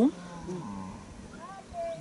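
Faint lowing of a plough ox: a low, drawn-out call in the first second, with a few faint higher tones near the end.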